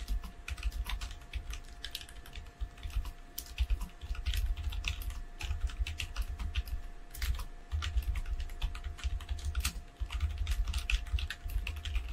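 Typing on a computer keyboard: a run of quick, uneven keystroke clicks with short pauses between bursts, and a faint steady hum underneath.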